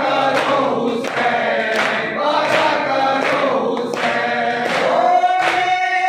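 A group of men chanting a noha lament in unison, with sharp rhythmic strikes of matam (hands beating on chests) about once every three-quarters of a second, keeping time with the chant.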